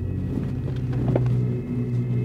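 Low, droning background music, with sustained deep notes that shift to a new pitch at the start.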